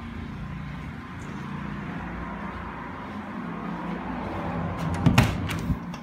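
Front door of a house being opened: a short cluster of latch and handle clicks and a knock about five seconds in, with a smaller click just before the end, over a steady background hum.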